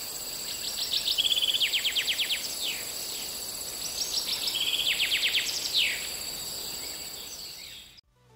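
Woodland ambience: a songbird sings two phrases of rapid trilled high notes with quick downward sweeps, a second or so apart. Under the song runs a steady high-pitched hum and a soft even hiss.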